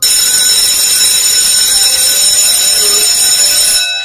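Loud, shrill, steady ringing like an electric alarm bell, laid on as an edited sound effect. It cuts in suddenly and stops just before four seconds.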